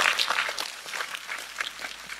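Audience applauding, fading within the first second to a lighter patter of claps.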